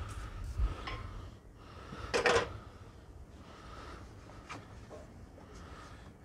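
Cleaning oil off around the rear differential filler plug: a short spray burst about two seconds in, with a rag rubbing over the axle casing near the end.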